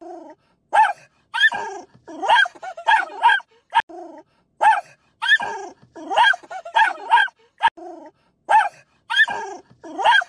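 A dog barking over and over in quick runs of two or three sharp barks, with a sharp click twice.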